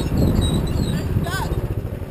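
Small dirt bike's engine running at low speed under the rider, with wind rumble on the helmet-mounted microphone; the engine eases off slightly toward the end.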